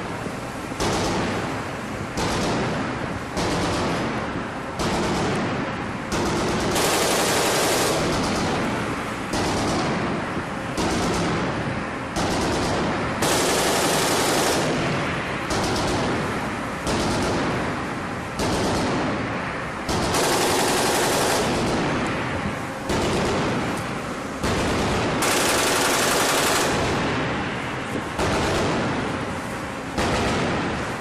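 Mk 38 25 mm chain gun (M242 Bushmaster) on a ship firing automatic bursts, one after another with brief pauses. Most bursts are about a second long, and a few run longer.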